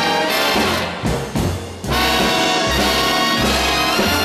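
Brass-led big-band backing music playing the instrumental close of the song. It thins out briefly about a second in, then the full band comes back in.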